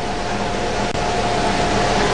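Steady background noise of a busy airport terminal hall carried over a live broadcast link, with a thin steady tone over it.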